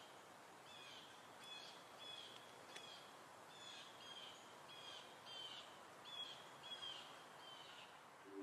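Faint outdoor ambience: a bird repeating a short, falling chirp about once every two-thirds of a second over a steady soft hiss.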